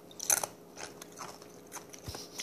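Handling noises on a tabletop: a few short, crisp clicks and crunches. The loudest comes about a third of a second in, with smaller ones after it.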